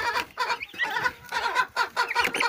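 A brood of young turkey poults calling, with many short peeps and chirps overlapping and following one another quickly.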